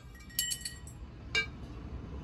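Steel parts of a hydraulic bottle jack clinking as they are set down on a concrete floor during disassembly: a quick run of ringing metallic clinks about half a second in, then one more sharp clink.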